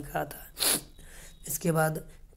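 A speaking voice pausing between words, with one short, sharp intake of breath a little under a second in and a single spoken word near the end.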